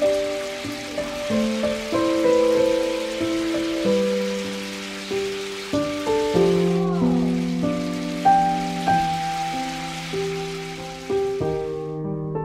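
Water running and splashing steadily into a sink, with soft piano music over it.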